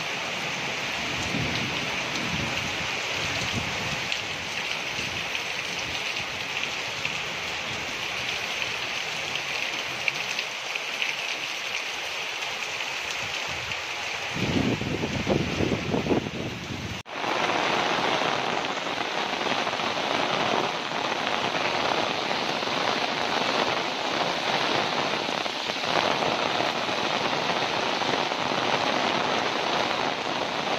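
Heavy rain falling steadily. About halfway through a low rumble lasts a couple of seconds; then the sound drops out for an instant and the rain resumes, fuller in the middle range.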